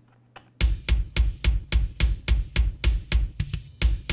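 Looped playback of a multitracked live rock drum kit recording, kick and snare prominent, starting about half a second in with fast, even hits about three a second. The layered sample kick is playing out of phase with the original kick, which the producer says "sucks the guts out" of it.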